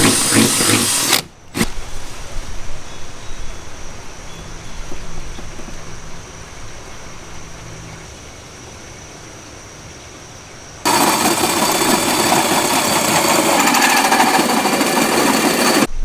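Cordless drill running briefly against a Jeep's steel body panel at the start. About eleven seconds in, a loud, harsh, continuous grinding begins as the drill cuts through the sheet metal for the round tail-light hole, and it runs on until the end.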